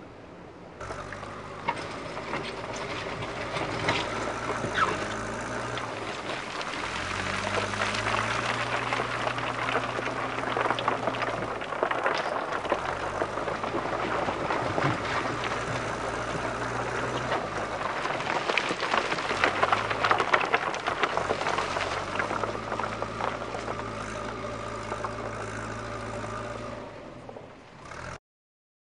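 Backhoe loader's diesel engine running under load from about a second in, its revs stepping up and down every few seconds as it works, with scattered knocks and rattles.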